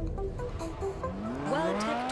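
Music mixed with a sports car's engine revving, its pitch climbing in the second half, with tyres squealing as the car drifts.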